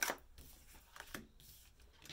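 Tarot cards being handled as one is drawn from the deck: a sharp click at the start, then a few light ticks and soft rustling about a second in.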